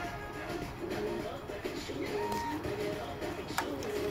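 A dove cooing over and over, with other bird calls, and a single sharp click near the end.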